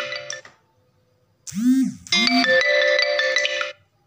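A mobile phone ringtone: a bright, chiming electronic melody with quick swooping tones, which stops about half a second in and, after a pause of about a second, plays again until shortly before the end.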